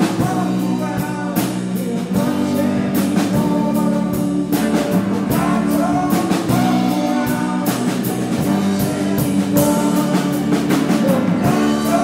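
Live country band playing a song: guitars strummed over a steady beat of drum hits, with a voice singing the melody.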